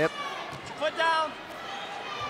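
Wrestling shoes give a short squeak on the mat about a second in as a takedown is made, over the steady background noise of the arena crowd.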